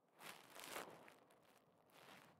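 Near silence, broken about a quarter second in by a short, faint rustle of noise lasting under a second.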